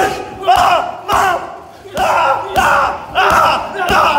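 A rapid series of gloved punches slapping into a padded body protector, about every half second, each met by loud shouting and yelling.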